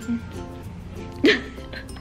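Background music with soft sustained notes, and one short, loud vocal sound about halfway through.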